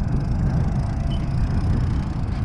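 Wind buffeting the microphone: a steady, uneven low rumble with no distinct events.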